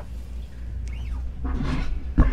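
Studio room tone with a steady low hum after a song ends, a brief falling squeak about a second in, and voices starting to stir near the end.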